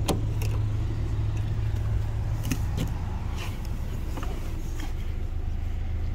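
Steady low hum of a four-cylinder car engine idling, with a few faint clicks over it.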